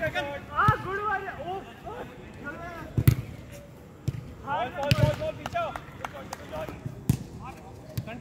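A football being kicked on artificial turf: about four sharp thuds of boot on ball, the loudest about three seconds in. Players' voices call out between the kicks.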